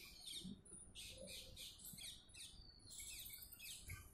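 Faint chirping of small birds: many short, quick, high chirps falling in pitch, coming one after another.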